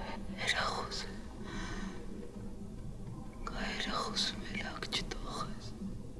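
Whispered speech in two short spells, one about half a second in and a longer one from about three and a half seconds in, over a faint steady low hum.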